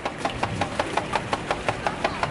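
Rapid, even clicking or knocking, about six or seven a second, over low street background noise.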